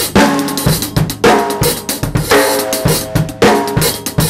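Drum kit playing a rock beat: a steady run of sixteenth notes on the hi-hat with bass drum, and a loud snare backbeat about once a second. The hi-hat is left out on the backbeats and the snare covers it.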